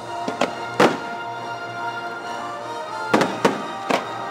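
Fireworks bangs over the show's orchestral soundtrack. There are about six sharp reports: three close together in the first second, the loudest about a second in, then three more near the end.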